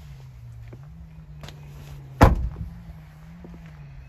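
A pickup truck's rear cab door being shut: one loud thud about two seconds in, after a few faint clicks.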